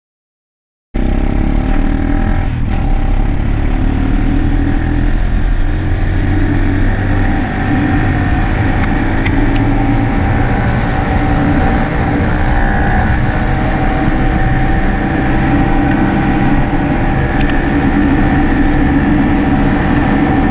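Dirt bike engine running at a steady pace while riding, starting about a second in.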